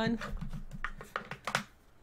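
Fingers flicking through a wooden box packed with tarot cards: a quick run of light clicks and taps that stops about a second and a half in.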